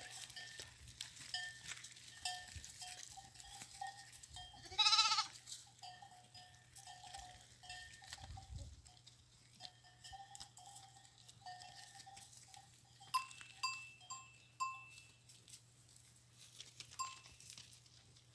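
Livestock bells clinking irregularly as the animals move, with one loud bleat about five seconds in.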